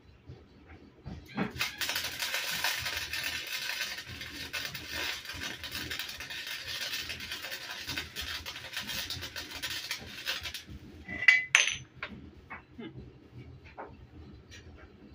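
Welding arc crackling and hissing in one continuous run of about nine seconds, starting a couple of seconds in and stopping abruptly. A sharp metallic clink with a brief ring follows near the end.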